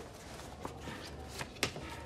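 A few soft clicks and knocks over a low steady hum, as things are taken out of pockets. The loudest knock comes about a second and a half in.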